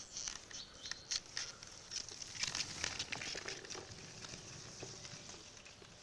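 Skateboard wheels rolling over a gritty dirt path: a crackly grinding with many small clicks and knocks that fades out toward the end.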